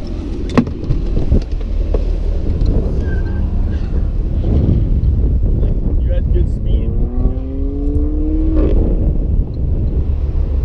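A steady low rumble, with a couple of sharp clicks in the first second or so. Near the end, a car engine accelerates, its pitch rising steadily for about two seconds.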